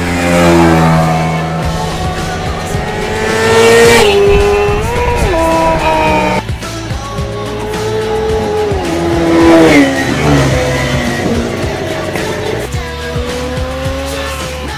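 Sport motorcycle engines revving hard as two bikes come toward and go by at speed, each rising in pitch and loudness, then dropping sharply in pitch as it passes, about four seconds in and again near ten seconds.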